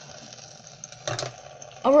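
Tap water running steadily into a stainless-steel sink, splashing over a block of ice and the drain strainer.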